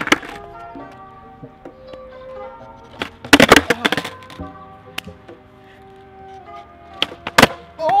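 Skateboard tail popping and the board clattering on a concrete sidewalk during ollie attempts, a cluster of loud clacks about three seconds in and two sharp ones near the end, the last on an ollie that was almost landed. Background music plays throughout.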